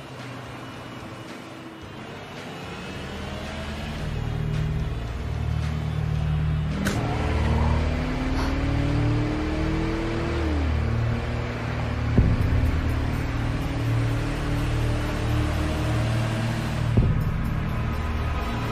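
Suspense film score with a low, pulsing drone that builds in loudness, mixed with a car engine running. A pitched whine rises from about seven seconds in and falls away near ten seconds, and two short sharp knocks come later.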